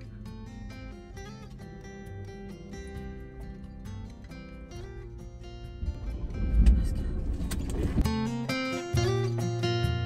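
Acoustic-guitar background music, with a loud low rumble for about two seconds starting some six seconds in; after the rumble the music comes in louder with a heavier bass.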